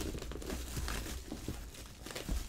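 Hands rummaging inside a cardboard shipping box, with a soft rustle and crinkle of bubble wrap around the items packed inside.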